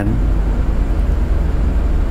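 A steady low rumble of background noise fills the pause in speech.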